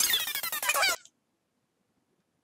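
About a second of an electronic dance track playing from a DJ software deck, full of synth sweeps falling in pitch, which then cuts off abruptly into silence.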